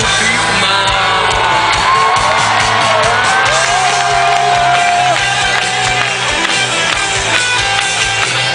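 Live rock band playing loudly in a stadium, recorded from the crowd, with fans cheering and shouting over it. A long sung note is held through the middle.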